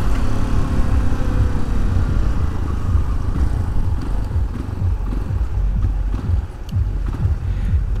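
Yamaha motorcycle engine running as the bike slows in traffic, its note sliding down over the first few seconds, under a steady rumble of wind on the helmet microphone.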